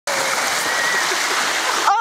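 Steady rushing hiss of small surf waves washing onto a sandy shore. It cuts off suddenly near the end as a woman's voice begins.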